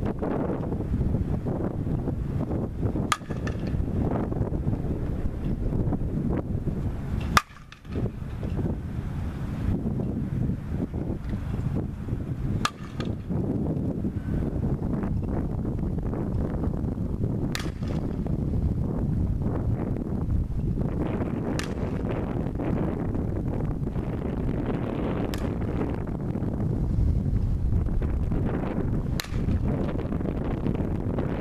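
Softball bat hitting the ball, a sharp crack about every four seconds, seven times in all, over steady wind noise on the microphone.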